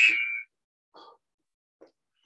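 Workout interval timer's buzzer: a steady high-pitched electronic tone marking the start of the interval, which cuts off about half a second in.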